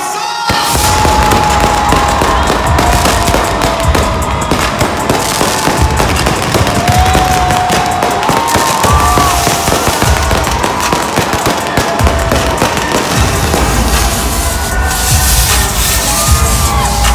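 Fireworks crackling and popping densely, over loud music with a heavy bass that cuts in and out.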